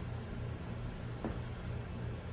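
Low, steady background hum with a single faint click a little past the middle.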